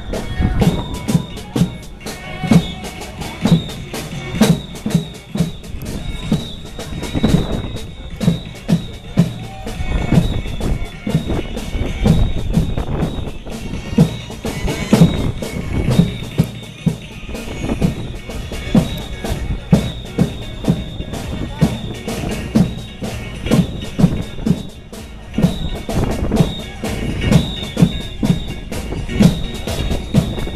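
Marchers' drums beating a rhythm, with crowd voices beneath.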